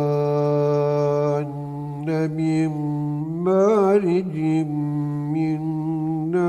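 A solo male voice chanting a religious chant over a steady low drone. It opens on a long held note for about a second and a half, then moves through short, wavering, ornamented phrases with gaps between them.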